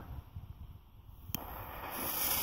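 The lit fuse of a Trueno Blue TB5 firecracker, ahead of the bang. It is quiet at first, with a single sharp click a little past the middle, then a hiss that builds toward the end.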